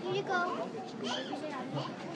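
A group of children talking and calling out over one another, high-pitched voices overlapping, with no clear words.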